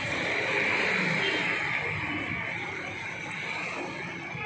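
Steady outdoor background noise: an even hiss, strongest in the upper-middle range, with faint shifting low sounds beneath it.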